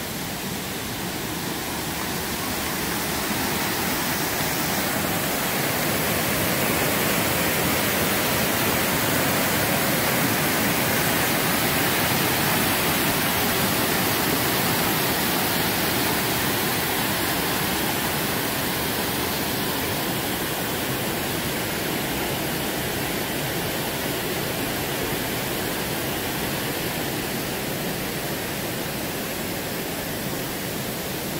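River water rushing over and between boulders in a rocky cascade, a steady rushing that swells over the first several seconds and slowly eases off toward the end.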